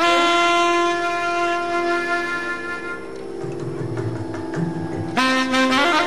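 Carnatic alto saxophone holding one long steady note that softens and fades over a steady drone. About five seconds in, a new loud phrase starts, with sliding, ornamented notes (gamakas).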